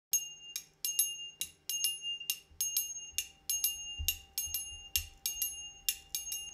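Small metal percussion bell struck by hand in a rhythmic pattern, about two to three strikes a second, each strike ringing briefly, as the intro of a jazz song; soft low bass notes come in during the second half.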